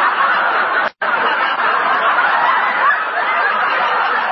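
Studio audience laughing at a joke in an old radio broadcast recording. The laughter is loud and sustained, and it cuts out for an instant about a second in before carrying on.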